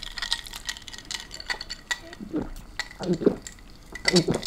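Cola fizzing in a glass, a dense run of small crackling pops from the carbonation, with a few short low mouth sounds from the drinker about two to three seconds in.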